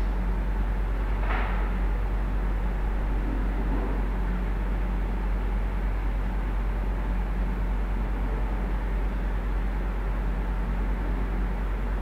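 Steady low electrical hum with hiss: the background noise of the recording setup, with no other sound standing out.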